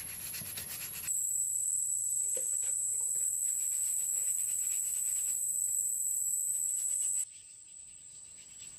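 Faint rubbing and scraping of a hand smearing paint over a cement surface, under a steady high-pitched insect drone. The drone starts abruptly about a second in and drops away near the end.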